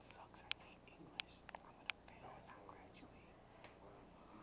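Faint whispering in a quiet room, with five or six sharp clicks in the first two seconds.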